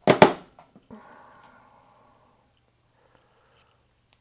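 A loud click of a mains switch being flipped on to power a PTC hot plate, followed about a second later by a brief faint high tone and a faint steady low hum.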